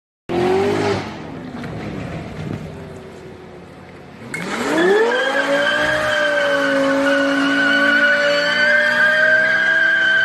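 A car engine, loud at first and fading over the first few seconds. About four seconds in, a Lexus LFA's V10 revs sharply up and holds high and steady, with a steady tyre squeal over it as the rear tyres spin in a smoky burnout.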